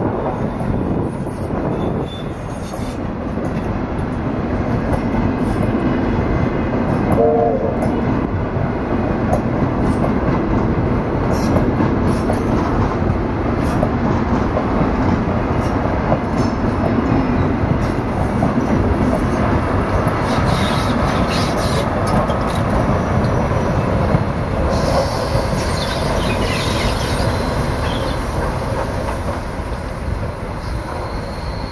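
Steam-hauled train of passenger coaches rolling slowly past, with a steady rumble and wheels clacking over the rail joints. A short pitched note sounds about seven seconds in, and a higher hiss with a thin squeal rises near the end as the arriving train slows into the station.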